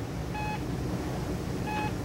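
Hospital patient monitor beeping twice, short pitched beeps a little over a second apart, over a low steady hum.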